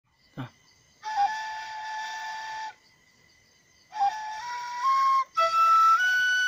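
Home-made bamboo side-blown flute playing a slow melody: a long held note, a pause, then a phrase that steps upward to higher notes. Each phrase opens with a quick ornamental flick.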